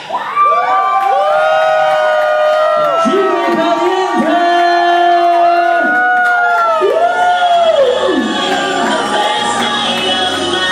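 Nightclub audience cheering and screaming, many high-pitched voices overlapping in long held yells, as the music drops out at the start. A low beat comes back in faintly during the second half.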